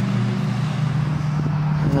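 Steady low mechanical hum under an even hiss of background noise, the hum's pitch stepping up slightly partway through.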